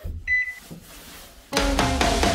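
Edited sound effects: a short electronic beep just after the start, then about a second and a half in, a loud buzzy comedic sound effect with heavy bass.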